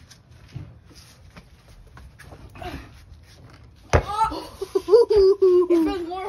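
Faint background for about four seconds, then a sharp knock and a person's loud, drawn-out, wavering vocal cry lasting about two seconds.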